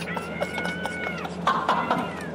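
A young man screaming for joy, high-pitched and held: one long scream, then a shorter one that falls in pitch near the end, with scattered clicks and knocks from the payphone handset.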